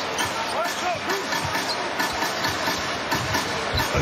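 Arena crowd noise during live basketball play, with a basketball being dribbled on the hardwood court and scattered voices.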